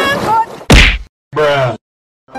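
A loud comic 'whack' sound effect added in editing, about two-thirds of a second in, followed by a brief falling-pitched vocal sound, with dead silence cut in between and after.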